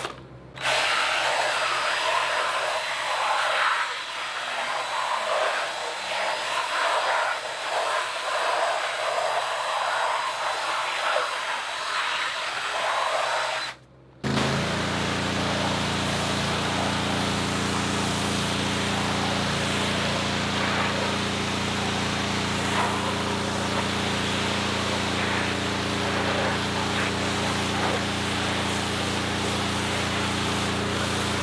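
A stiff brush scrubbing a foam-covered rubber floor mat, an uneven scratchy sound. After a sudden break about halfway, a pressure washer runs steadily, its pump humming under the hiss of the water jet blasting the foam off the mat.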